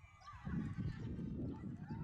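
Spectators shouting and calling out during play, their voices rising and falling in pitch, over a low rumble.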